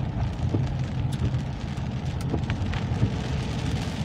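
Car driving on a rain-soaked road, heard from inside the cabin: a steady low rumble of engine and tyres on wet tarmac, with scattered ticks of rain hitting the car.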